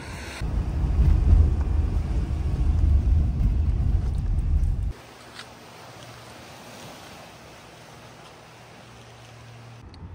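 Wind buffeting the microphone with a loud, gusting low rumble that cuts off abruptly about five seconds in. After that comes the faint, steady wash of the sea on a rocky shore.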